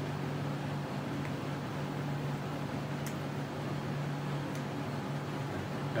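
Steady hum and whir of a running computer's cooling, with a constant low tone under an even hiss. A few faint clicks come through about a second in and again around the middle.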